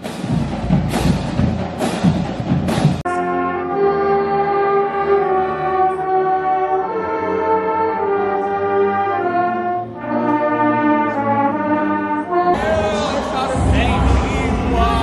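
University marching band playing live: for about three seconds beats land roughly once a second over the crowd, then the brass section of sousaphones, trumpets and trombones holds a run of loud sustained chords. Near the end this cuts to voices and crowd noise.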